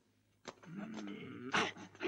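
A man's drawn-out, strained groan lasting about a second, as from someone taking a blade to the chest, followed near the end by a short, sharp burst of noise.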